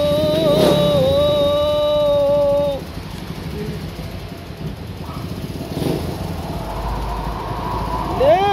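A man's voice holding a long, slightly wavering sung note of the adhan (Islamic call to prayer), which ends about three seconds in. After it comes background noise, with a low vehicle engine rumble building near the end.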